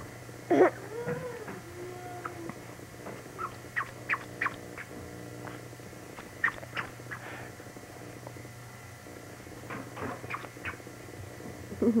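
A baby's brief vocal sound about half a second in, followed by a string of short high squeaks and clicks.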